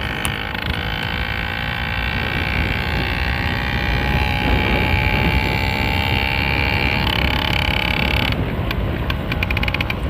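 Small 50cc engine on a motorised bicycle running at a steady speed, with wind rumble on the microphone. Near the end its steady note falls away and a quick run of rattling clicks comes in.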